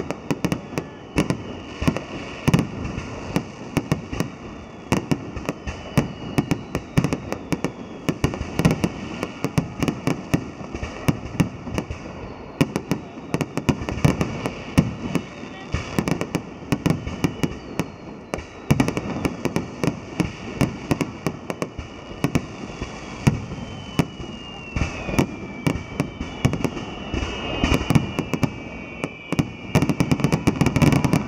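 Aerial firework shells bursting in a dense, continuous barrage of bangs and crackling, several a second. In the last few seconds, high falling whistles sound over the bangs.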